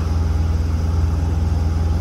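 Semi truck's diesel engine idling: a steady, low, even rumble with a fast regular pulse.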